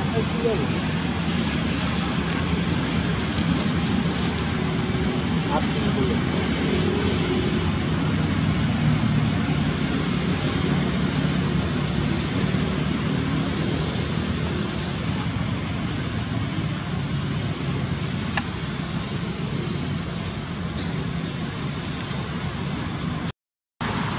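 Steady outdoor background noise: a continuous low hum with indistinct voices mixed in, and one sharp click about eighteen seconds in.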